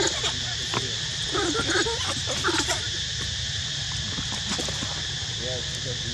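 Steady high insect drone, with brief faint voices about one and a half to three seconds in.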